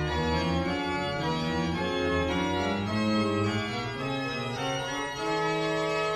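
Organ playing slow, held chords that change every second or so: recessional music as the ceremony's procession leaves.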